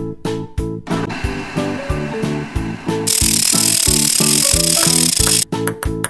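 Children's background music with a steady beat, overlaid by a cartoon machine sound effect: a grinding, power-tool-like noise that starts about a second in, gets much louder about three seconds in, and cuts off suddenly near the end.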